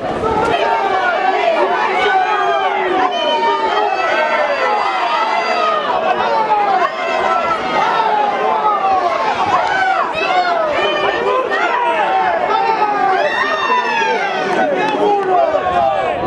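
Many voices at once: a rugby crowd's chatter and shouts overlapping, with no single voice standing out.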